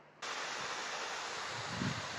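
Steady rush of falling water from a waterfall, starting suddenly about a quarter-second in and holding even.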